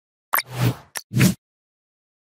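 Logo sting sound effects: a sharp pop, a short swelling swish, then a click and a second quick pop, all within about a second.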